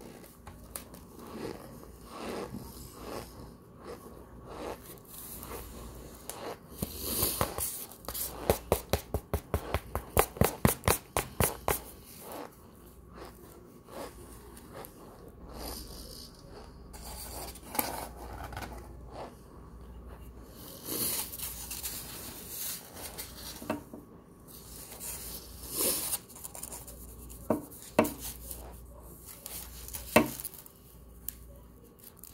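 Close-up chewing of a big mouthful of dry packed powder, with scattered crunching and squeaking mouth sounds. About seven seconds in comes a rapid run of sharp crunches, four or five a second, lasting about five seconds.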